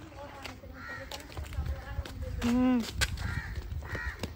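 A bird calling outdoors, short calls repeated about every second and a half to two seconds, with one brief, louder vocal sound from a person about two and a half seconds in.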